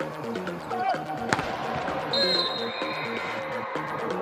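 A volleyball is struck hard once, a single sharp smack about a second in, over electronic music with a steady repeating beat.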